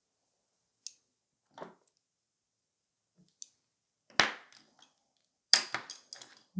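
A few faint, isolated clicks, then two sharp knocks about four and five and a half seconds in: small metal nail-art tools, a dotting tool and a detail brush, being set down and picked up on a hard table.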